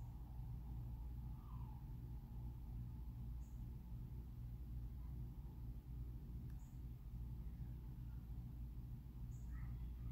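A quiet, steady low hum, with a few faint, brief high squeaks over it.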